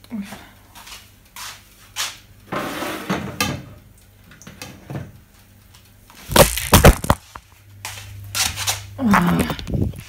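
Knocks, bumps and rubbing from a phone camera being handled and moved around a kitchen, with a cluster of loud knocks about six and a half seconds in.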